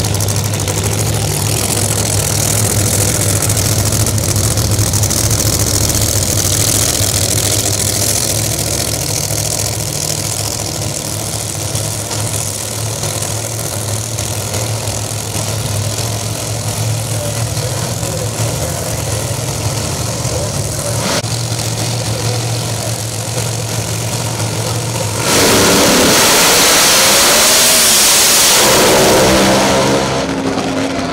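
Supercharged Pro Mod drag-race cars idling at the starting line with a steady low engine note. About 25 seconds in, they launch at full throttle, very loud for about four seconds, the engine pitch rising twice as the cars run down the strip.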